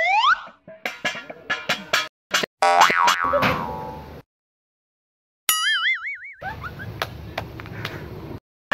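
A string of cartoon comedy sound effects: a rising slide-whistle glide ends just after the start, then a quick run of clicks and knocks and a loud ringing tone that dies away. After a second of silence comes a short wobbling boing, followed by plain outdoor background noise.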